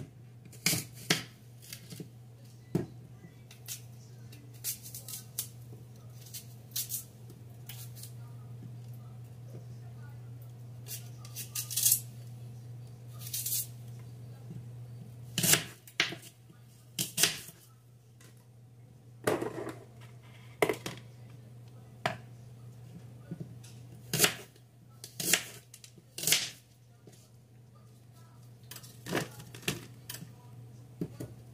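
Kitchen knife knocking and tapping on a bamboo cutting board at irregular intervals as an apple is sliced and cored, over a steady low hum.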